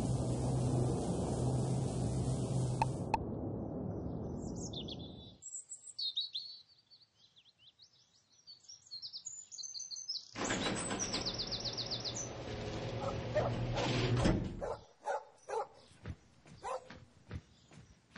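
The closing bars of a theme tune fade out, then birds chirp over near quiet. About ten seconds in, a steady humming, rattling noise starts, grows louder and cuts off after about four seconds, followed by a string of separate thumps like footsteps.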